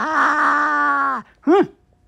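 A long, steady, held vocal groan on one pitch that sags and cuts off a little over a second in, followed by a brief rising-and-falling grunt.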